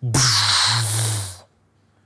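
A man imitating a bomb explosion with his voice: one long breathy, hissing 'pshhh' over a low hum from his throat, lasting about a second and a half before it stops.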